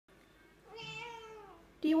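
A tabby cat gives one long meow that falls slightly in pitch toward its end; the owner takes it as the cat asking to go outside.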